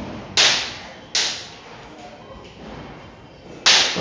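Firecrackers going off: three sharp bangs, each trailing off in an echo, about a third of a second, just over a second and three and a half seconds in.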